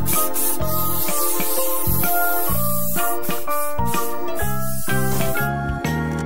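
A cartoon spray-paint sound effect: a long hiss that stops about five and a half seconds in, over cheerful children's background music with a bass beat.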